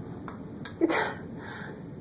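A woman's short, sharp, breathy burst of laughter about a second in, on the word "It's", over the steady hiss of an old film soundtrack.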